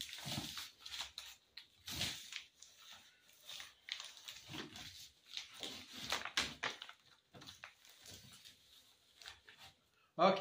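Hands pressing and smoothing duct tape folded over the edge of a plastic sheet: a run of irregular rustles, crinkles and soft rubbing, one after another.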